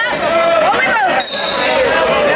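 Several voices shouting over one another in a gymnasium: coaches and spectators calling out during a wrestling bout. A brief high, steady squeal sounds about halfway through.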